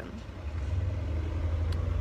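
A motor vehicle's engine running nearby, a steady low rumble that grows louder about half a second in.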